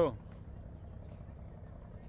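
A pause in speech filled with steady low outdoor background noise, a faint rumble like distant street traffic, after the end of a spoken word at the very start.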